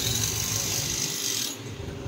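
Steady background noise of a busy clothes shop: a low hum with a high hiss over it, the hiss dropping away briefly near the end.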